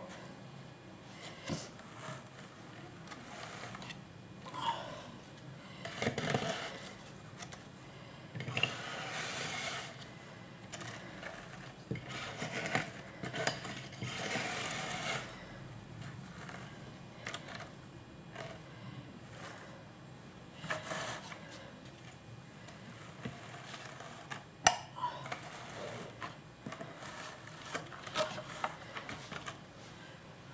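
Hands working a thick wool batt on a drum carder's wire-toothed drum: irregular rustling and scraping of fibre on the carding cloth, in bursts, with a few sharp clicks and the sharpest click late on.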